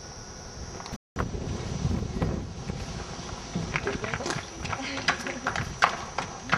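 Wind noise on the microphone. After a sudden break, horses' hooves clip-clop on concrete, the hoof strikes sharp and more frequent in the last couple of seconds.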